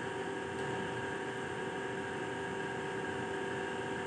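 A steady, even hum with hiss and a few constant tones, unchanging throughout, with no distinct events.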